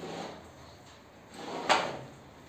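A plastering hand tool scraping along gypsum plaster on the underside of a beam, in rough strokes, the loudest and sharpest one near the end.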